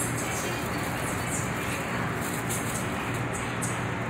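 Steady low hum and rushing noise of a Seoul Subway Line 1 electric train, heard from inside the car at a platform, with faint brief hisses now and then.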